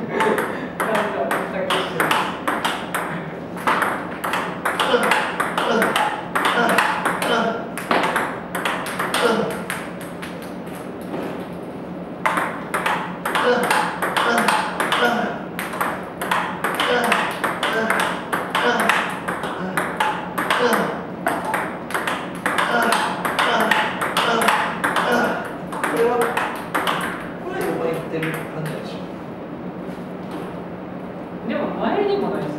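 Table tennis balls hit rapidly with a paddle and clicking as they bounce on the table and floor, one after another in two long runs broken by a pause of about a second near the middle.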